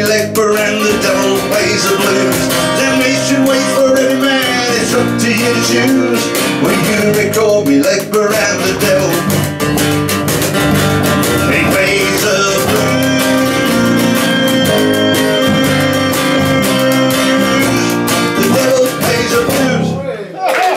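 A live acoustic band plays without vocals: a strummed acoustic guitar, an electric bass guitar, and a box drum (cajon) played by hand keeping the beat.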